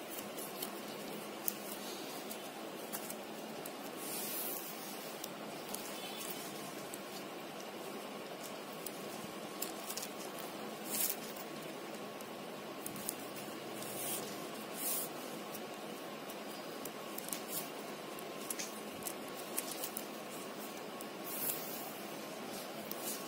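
Plastic wire weaving strips being pulled and worked through a tight plastic-wire weave by hand, giving short, scattered scratchy swishes over a steady background hiss with a faint steady tone.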